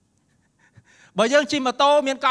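A man speaking into a handheld microphone, his voice coming in loud about a second in after a short silence.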